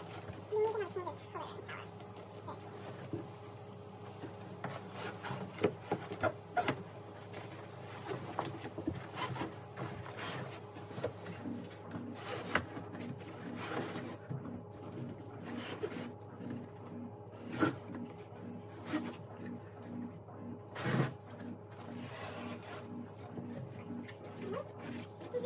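Cardboard box and plastic packaging being handled while a desktop tower is unpacked: scattered rustles, scrapes and light knocks, over a steady faint hum.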